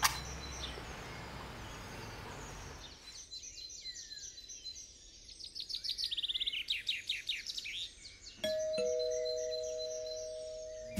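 A sharp strike and about three seconds of hiss from the smartphone's virtual match app as the cigarette is lit, with birds chirping throughout. Near the end a two-tone doorbell chime sounds, a falling ding-dong that rings on.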